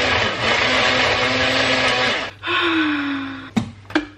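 Electric kitchen blender running loud with a steady motor hum, cutting off abruptly about two seconds in. It is followed by a shorter run whose pitch slides down as it slows and fades, then two sharp clicks near the end.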